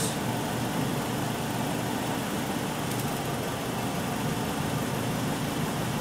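2004 Dodge Neon four-cylinder engine idling steadily, with the plug wire on cylinder two shorted out to cause an ignition misfire.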